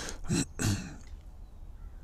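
A man clearing his throat, two short rough bursts in quick succession about half a second in.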